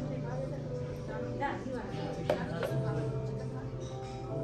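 Background music with long held notes over a murmur of voices, with one sharp clink of a utensil on a dish a little past two seconds in.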